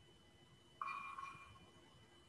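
A single short ping-like chime about a second in, with a clear pitch and an upper overtone, fading out within a second. Under it is a faint steady high-pitched whine.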